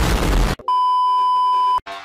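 An edited-in explosion sound effect, a loud noisy rush that cuts off about half a second in. It is followed by a steady, single-pitched electronic bleep tone lasting about a second.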